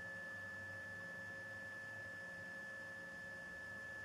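Steady, faint electrical hum with a constant high, thin whine from solar power electronics. It holds unchanged throughout.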